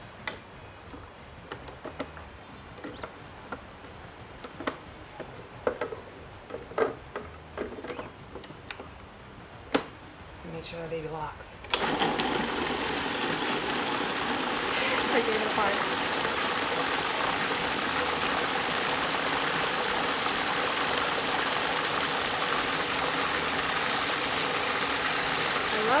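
Electric food processor switched on about twelve seconds in and running steadily with a constant motor hum, blending a thick hummus paste. Before it starts there are only a few light clicks and knocks.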